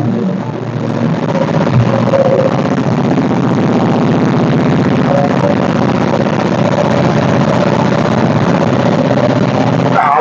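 Honda Transalp 750's 755 cc parallel-twin engine idling steadily, deafening up close.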